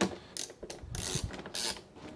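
Ratchet wrench clicking in short, irregular runs as the bolts of a car door striker are tightened.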